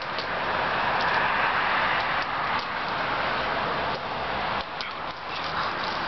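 Steady hiss of road traffic running throughout, with a few light taps scattered through it.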